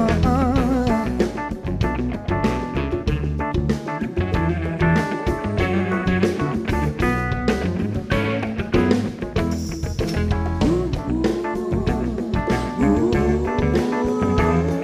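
Live soul band playing: electric guitar, bass and drums with a steady beat, and a singer's voice holding wavering, vibrato notes at the start and again near the end.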